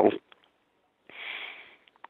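A man sniffing, a short hiss of breath drawn in through the nose lasting under a second, about a second in, in a pause between spoken words.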